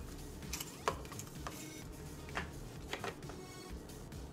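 Quiet, scattered crinkles and clicks of a small folded paper slip being handled and unfolded, a few short crackles spread over the few seconds.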